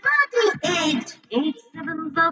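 Children's voices singing the eight-times table as a song, over a music backing.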